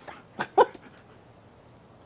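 A husky snapping its jaws at floating soap bubbles: two quick mouth sounds about half a second in, the second louder.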